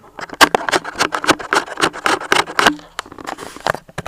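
Plastic bags and papers being handled, a dense, irregular run of sharp crinkles and clicks.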